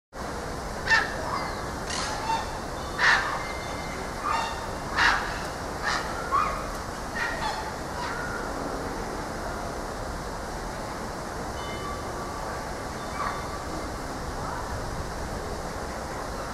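White-naped mangabeys giving a run of short, sharp calls, about ten in the first eight seconds, then only a few faint calls over a steady background noise.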